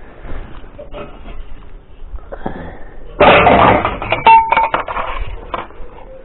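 Scrap being handled: a loud jumble of knocks and rattles that starts about three seconds in and lasts a couple of seconds, as a plastic vacuum-cleaner tube and floor head are picked up.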